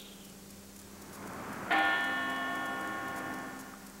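A church bell struck once, nearly two seconds in, ringing on in several steady tones that slowly fade. A soft rush of background noise swells just before the stroke. It is a toll in mourning for Pope John Paul II.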